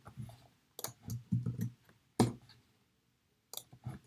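A few sharp clicks at irregular times, the loudest about two seconds in, with faint low sounds between them.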